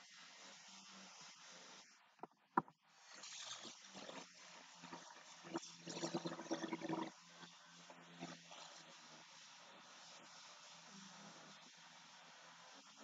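Quiet room hiss with a single sharp click about two and a half seconds in, then a person's brief low wordless vocal sound about six seconds in.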